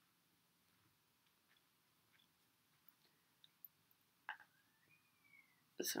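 Near silence: room tone with a few faint clicks as a knitted jumper on circular needles is handled, and a faint short tone that rises and then falls about five seconds in.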